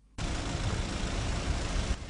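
Steady outdoor rumble and hiss of field ambience, starting abruptly a moment after a brief silence.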